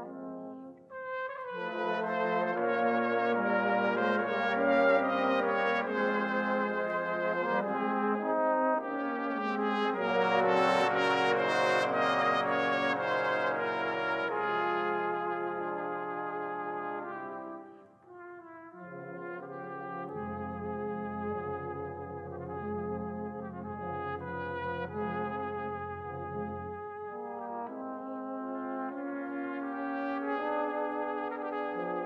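Brass band playing sustained chords, with two short breaks between phrases, about a second in and again around halfway, and deep bass notes under the later phrase.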